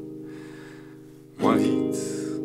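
Acoustic guitar chord ringing out and slowly fading, then a new chord strummed sharply about one and a half seconds in.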